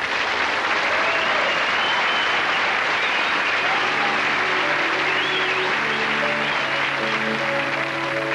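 Studio audience applauding steadily after the host's good night. About halfway through, closing music with long held notes comes in under the applause.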